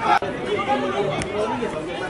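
Several people chattering at once, indistinct voices overlapping, with two sharp clicks, one just after the start and one about a second later.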